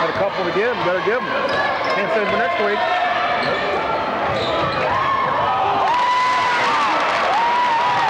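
Basketball dribbled on a hardwood gym floor, with the shouts and chatter of a gym crowd throughout; the crowd's yelling grows louder in the second half.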